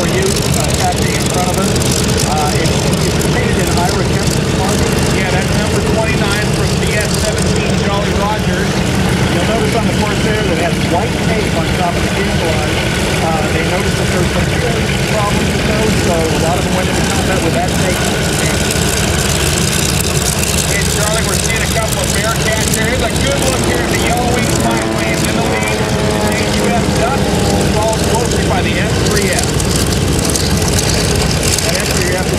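Grumman F8F Bearcat's Pratt & Whitney R-2800 radial engine running at low power while the fighter idles and taxis, a steady, loud rumble. The engine note shifts in pitch in the last several seconds.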